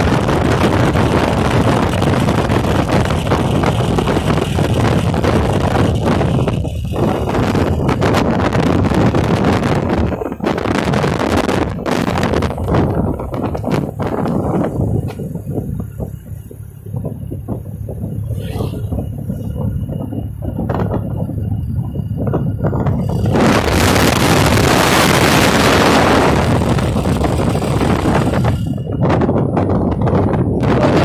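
Wind rushing over the microphone of a phone carried on a moving motorcycle, over the bike's engine and road noise. About halfway through it eases off for several seconds, then rises loud again.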